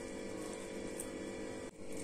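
Faint steady background hum with a few held tones, briefly dropping out near the end.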